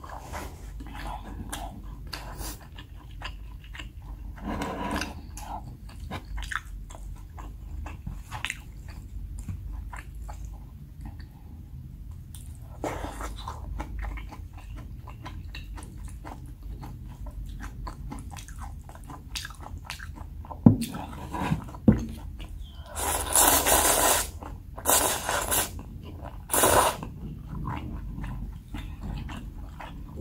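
Close-miked eating sounds: wet chewing and mouth clicks on instant black-bean noodles, with crunching of frozen spring onion. Two sharp knocks come about 21 and 22 seconds in, and several louder noisy bursts of eating sound follow near the end.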